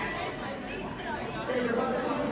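Indistinct chatter of several voices, with no one voice standing out.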